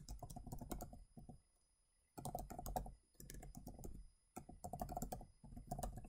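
Computer keyboard typing in several quick runs of keystrokes, with short pauses between the runs.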